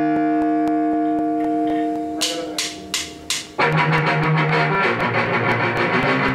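A held electric guitar chord rings and fades. Four quick drum hits follow about a third of a second apart, then the full rock band comes in with loud guitar chords and drums.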